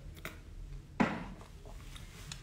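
A man drinking water from a glass, with a short, sudden sound about a second in that fades quickly.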